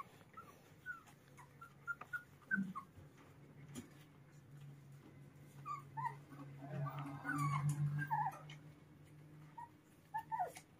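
Puppies whimpering faintly in short, high squeaks, coming more often about six to eight seconds in, over a low steady hum.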